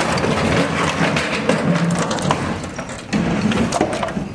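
Wooden shuttering boards being wrenched and broken apart, with a few sharp knocks and clatters over a continuous low, engine-like rumble.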